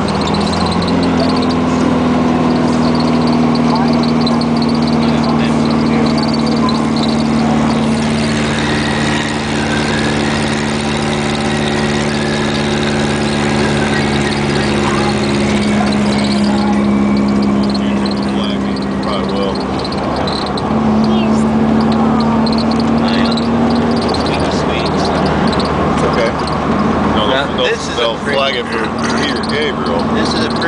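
The engine of a custom VW Super Beetle rat rod drones steadily under way, heard from inside the car over road noise. Its pitch holds for long stretches, then steps up about twenty seconds in and drops back a few seconds later, as the speed or gear changes.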